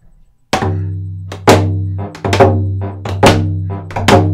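Frame hand drum beaten in a steady rhythm, the strongest beats about one a second with lighter hits between, its low tone ringing on between strokes. The drumming starts about half a second in.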